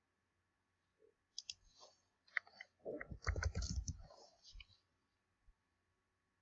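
Faint computer mouse clicks and keyboard keystrokes: a scattered run of sharp clicks from about a second and a half in until nearly five seconds, with dull low knocks among them around three to four seconds in.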